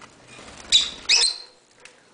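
Rosy-faced lovebirds giving two loud, shrill calls in quick succession a little under a second in, over faint rustling in the cage.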